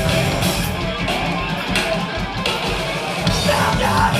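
Hardcore punk band playing live: distorted electric guitars and bass over fast drums. Shouted vocals come in near the end.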